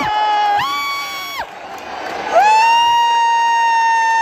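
A man cheering with loud, drawn-out shouts: two shorter calls in the first second and a half, then one long held shout from about two seconds in, rising at its start and falling away at its end.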